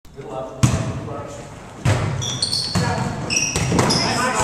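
A volleyball being struck by hands, sharp smacks about once a second that echo around a gym. Short high squeaks of sneakers on the wooden floor come in the second half.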